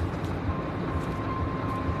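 Steady low rumble and hiss of outdoor background noise, with a faint high steady tone coming in about half a second in.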